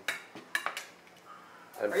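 A few sharp clinks of ceramic plates and dishes knocking together on a table, mostly in the first second.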